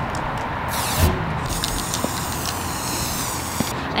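Aerosol can of fabric spray paint hissing in one long continuous spray, strongest from just under a second in until shortly before the end.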